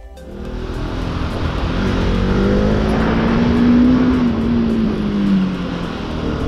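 Bajaj Pulsar RS 200's single-cylinder engine pulling the bike along, its note rising gradually as the rider accelerates and then dropping as he eases off, with a steady rush of wind noise over it.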